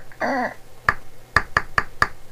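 A short wavering vocal sound just after the start, then four sharp clicks, unevenly spaced, in the second half.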